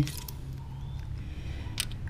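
Quiet metal handling at the valve rockers as a feeler gauge is worked under a rocker arm to check the valve clearance. There is a low steady hum, and one sharp click near the end as a tool goes onto the adjuster.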